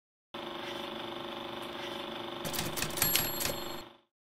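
Electronic sound effect of an animated logo intro: a steady buzzing drone with a fast, machine-like rhythmic texture, then a flurry of clicks and thin high tones in the last second and a half before it stops.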